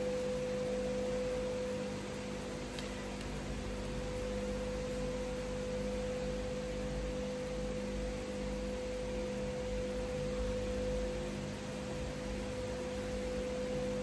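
Steady background hum with a single held tone under an even hiss, constant throughout.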